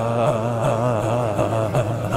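A man's long, sustained "ah" vocalisation, its pitch wobbling rhythmically, about four times a second, as his body bounces in a qigong shaking exercise; the shaking puts a vibration into the voice.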